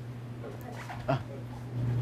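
Faint, distant speech from a student starting a question, with a short "uh" about a second in, over a steady low hum.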